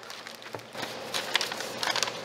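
Clear plastic bag crinkling and rustling as it is handled, with a run of short sharp crackles, and a sheet of paper being handled near the end.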